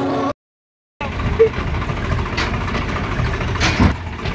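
Music cuts off abruptly, then after a brief dead gap a vehicle engine runs steadily under outdoor street noise, with a thump near the end.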